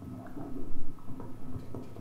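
A string of short, low instrument notes with soft knocks, played loosely one after another before the tune gets under way.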